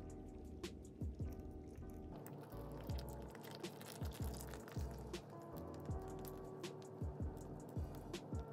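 Quiet background music: a laid-back lo-fi hip-hop instrumental with held chords and a soft, regular low beat.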